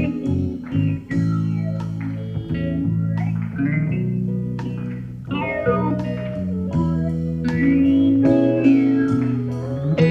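Live band playing an instrumental passage without vocals, with an electric guitar playing over bass guitar and drums.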